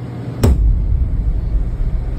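A single sharp bang about half a second in, followed by a low rumble.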